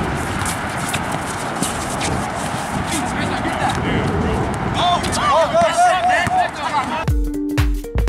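Live sound of an outdoor pickup basketball game: players' voices and court noise over a steady hiss, with a quick run of short, high squeaks about five seconds in. Background music with a beat comes back in about seven seconds in.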